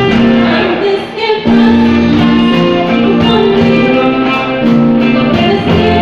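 Live band playing a pop-rock ballad on electric and acoustic guitars, bass and drums, with a woman singing into a microphone. The band drops back briefly about a second in, then comes in again.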